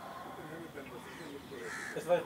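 Faint distant speech with a bird cawing in the background.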